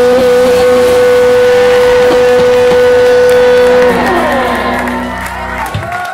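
Live punk rock band ending a song: the electric guitars hold a final ringing chord with one steady tone held over it, which stops about four seconds in. The chord fades and crowd cheering and whoops start to rise near the end.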